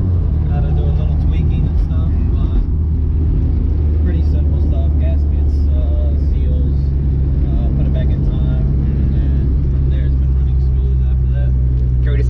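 Honda B20 VTEC engine heard from inside the cabin while driving: a steady low drone. Its pitch drops at the start, then holds steady.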